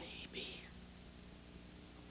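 Brief whispered words near the start, then quiet room tone with a faint steady hum.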